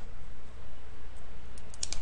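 Steady low electrical hum and faint hiss on the recording, with a few faint short clicks near the end.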